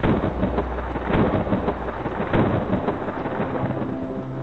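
A loud rumbling noise full of crackles starts suddenly and cuts across the background music. Pitched music comes back under it near the end.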